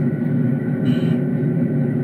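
The onboard sound system of a 1.6-inch scale EMD GP9 locomotive plays a steady, low diesel idle rumble through its subwoofer, with a short faint hiss about a second in.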